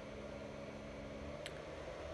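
Faint, steady hum and hiss of a Creality Ender 2 3D printer's cooling fans. A faint low tone stops about one and a half seconds in, at a single short click from the control knob being worked.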